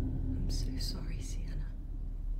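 A breathy, unintelligible whisper lasting about a second, over a low steady drone from the horror score.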